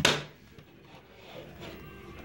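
A single sharp click or knock right at the start, then faint room noise.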